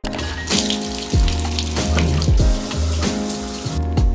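Water rushing from a bathtub-shower faucet just after it is turned on at the valve, over background music with a steady beat. The water hiss cuts off just before the end.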